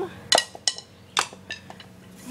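Handling noise from the phone being gripped: four short, sharp clicks and knocks over about a second and a half, the first two with a brief clinking ring.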